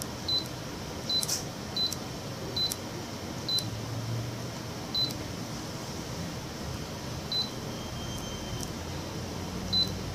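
Short high key-press beeps from the Canon imageRUNNER ADVANCE C2220i's touch-panel as a stylus taps its on-screen buttons, about eight at an uneven pace, over a steady background hiss.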